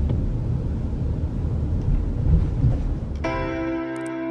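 Low, steady rumble of a car driving along a city street. About three seconds in, background music with sustained keyboard chords comes in.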